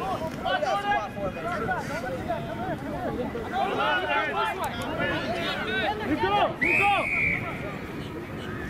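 Rugby players shouting and calling to each other, with one short referee's whistle blast, under a second long, near the end.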